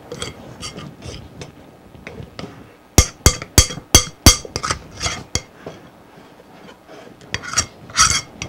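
A spoon stirring batter in a mixing bowl, scraping and clinking against the bowl, with a quick run of about eight sharp knocks a few seconds in.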